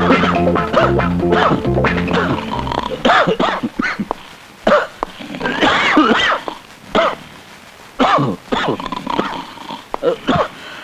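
Film soundtrack music that stops about three seconds in, followed by a string of short, separate cries whose pitch rises and falls, with quieter gaps between them.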